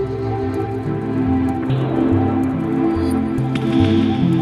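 Background music: a calm, ambient-style track with held tones over a slowly stepping bass line.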